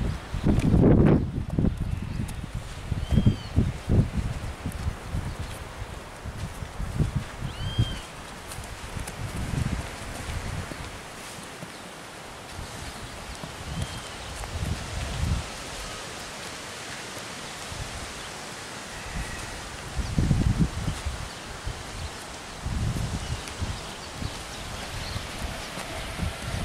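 Rustling and irregular low thumps as a horse is ridden at a walk and turned, its rider's long poncho flapping against the horse. A bird chirps briefly a few times.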